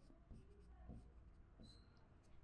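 Faint, scattered strokes of a marker drawing on a whiteboard.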